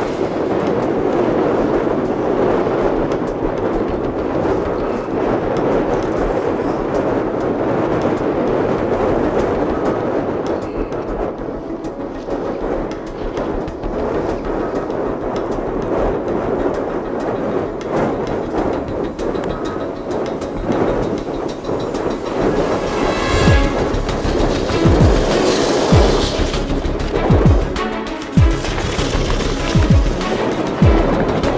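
Strong wind buffeting the microphone: a steady rushing noise, with heavy low thumps from gusts in the last several seconds.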